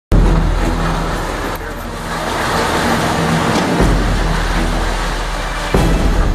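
A building collapsing into a sinkhole: a continuous rumbling crash of breaking structure with a steady engine hum beneath, and a sudden louder crash near the end as it comes down in a cloud of dust.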